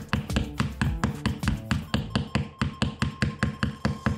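Light taps of a small hammer driving the pins of a wall hook into the wall, under background music with a quick, steady beat.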